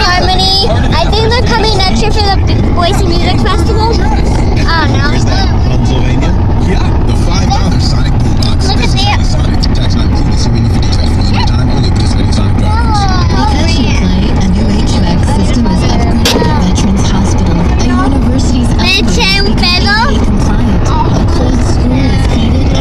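Steady low rumble of a moving car, heard from inside the cabin, with children's high voices calling out and shrieking over it at intervals.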